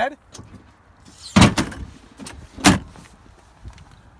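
Two loud clunks about a second and a half apart from the tilting dump bed of a Bennche T-Boss 750 UTV being worked by hand, the first followed by a brief rattle.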